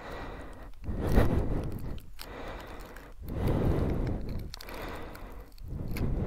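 Handling noise from a tyre plug kit: rustling and scraping as hands work a sticky rubber plug strip into the insertion tool. The noise comes and goes in a few short spells.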